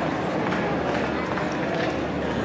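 Audience applauding: a steady, even patter of many hands clapping.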